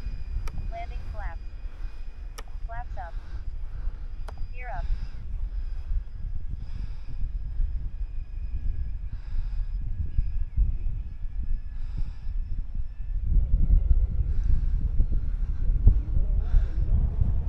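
Wind buffeting the microphone, heaviest near the end, over the faint, thin, steady whine of an E-flite Beechcraft D18 RC model's twin electric motors in flight.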